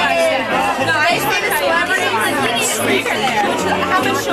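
Several people talking over one another, with music playing underneath.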